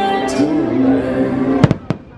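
Nighttime castle show soundtrack music playing, then two sharp firework bangs about a quarter second apart near the end, after which the music goes quiet.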